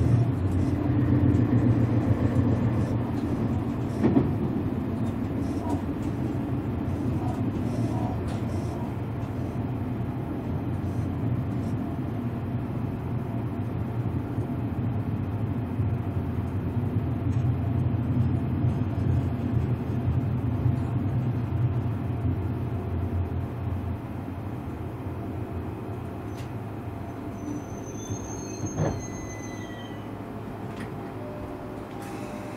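Cabin running noise of a Tobu 500 series Revaty limited-express train, a steady low rumble that gradually eases as the train slows for its next stop. There is a single knock about four seconds in, and a faint high whine near the end.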